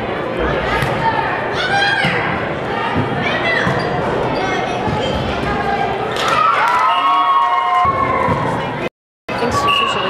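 Volleyball rally in a gym: players and spectators shouting and calling out, with sharp smacks of the ball being hit. A long drawn-out shout about seven seconds in, and the sound cuts out for a moment near the end.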